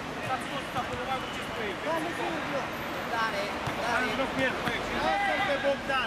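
Players shouting and calling to each other on a mini-football pitch, the calls coming thicker in the second half, with occasional dull thuds of the ball being kicked.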